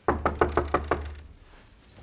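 Rapid knocking on a door: about ten quick knocks packed into just over a second, fading off toward the end.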